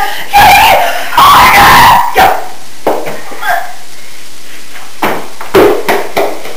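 Loud voice sounds with no clear words in the first two seconds, then a few short sharp knocks over a steady hiss.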